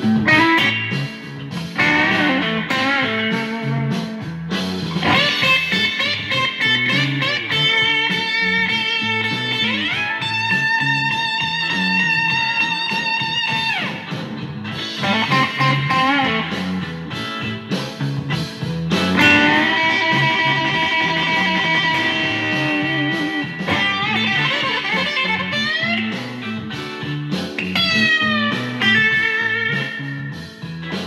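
Telecaster electric guitar playing a blues lead over a repeating low riff. Long bent notes are held with vibrato about ten seconds in and again around twenty seconds in, with quick runs of notes between them.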